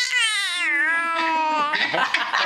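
A baby's long, high-pitched drawn-out vocalization, her imitation of a dolphin's call. The pitch wavers, drops lower about half a second in and holds there, then the sound stops shortly before the end.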